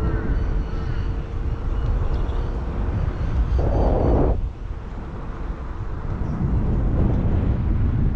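Low rumble of wind and travel noise on the microphone of a camera moving along a street, with a faint steady hum in the first half and a short burst of rushing noise about four seconds in.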